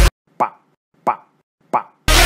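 Three short plopping sounds, each dropping in pitch, about two-thirds of a second apart, with silence between them after the music cuts out.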